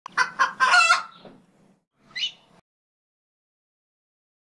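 A rooster crowing once, a crow of several quick syllables lasting about a second and a half, then a short high call about two seconds in.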